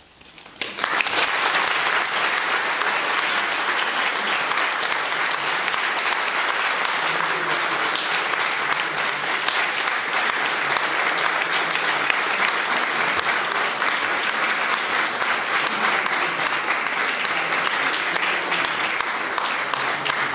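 Audience applauding in a concert hall, breaking out suddenly less than a second in and continuing steadily at full strength.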